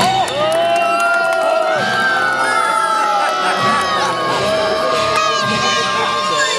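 A crowd of children cheering and shouting, many high voices at once, some calls held long.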